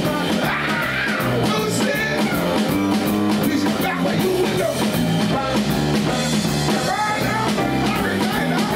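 Live rock and roll band playing: a male lead singer over electric bass and a drum kit.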